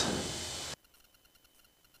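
Faint hiss from the cockpit intercom audio fading after speech, then cutting off abruptly to silence less than a second in, as the intercom squelch closes.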